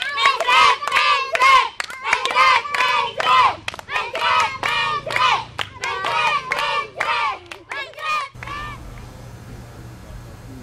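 A group of children singing a rhythmic game song together while clapping their hands. The singing and clapping stop suddenly about eight seconds in, leaving a steady low hum.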